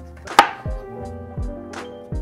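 A chef's knife slices down through a green bell pepper and strikes a plastic cutting board once, sharply, about half a second in. Background music with a steady beat plays underneath.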